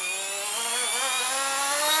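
OMP M2 V2 micro electric RC helicopter's main and tail motors spinning the rotor head at idle-up (stunt one) headspeed on the bench: a steady motor whine whose pitch wavers briefly about halfway through.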